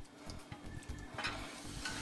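Silicone spatula stirring and scraping browned beef cubes in their oil and drippings in a baking dish, faint and irregular.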